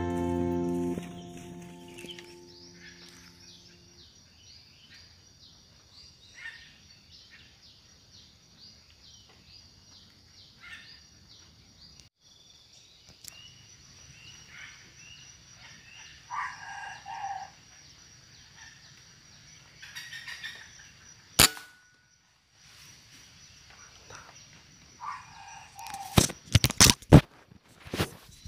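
Wild junglefowl crowing, faint at first, with louder calls twice: about 16 seconds in and again near the end. A single sharp crack cuts through about 21 seconds in, and a quick run of sharp cracks follows near the end. Music fades out in the first two seconds.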